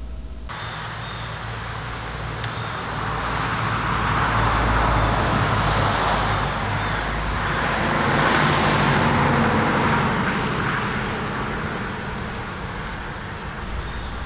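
Road traffic going by: the noise of passing vehicles swells and fades twice, loudest about five and nine seconds in.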